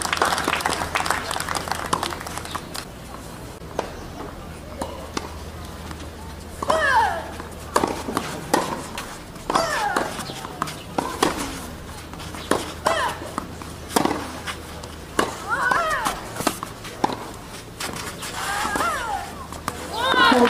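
A tennis rally on a clay court: racket strikes on the ball about every two to three seconds, with a short vocal grunt from the player on several of the shots.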